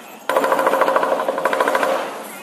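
Lion dance percussion: a fast roll of drum strokes with clashing cymbals, starting suddenly about a quarter second in and stopping at the end.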